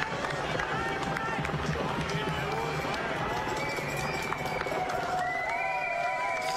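Roadside ambience of spectators along a marathon course: a steady crowd din of cheering and calling. Near the end come a few drawn-out calls or tones.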